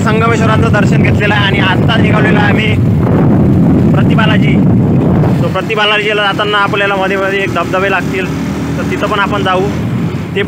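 A man talking over a loud, low rumble of outdoor noise that is heaviest for the first five seconds or so and then eases.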